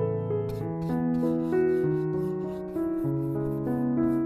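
Soft piano music, and from about half a second in a mop brush scrubbing acrylic paint across a primed canvas in quick, even strokes, about four a second.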